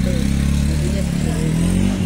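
An engine running steadily close by, its pitch rising slightly near the end.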